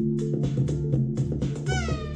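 Live electronic groove: a drum machine beat with short, regular hits over sustained low synth bass notes. Near the end a synth note slides down in pitch with a meow-like sweep.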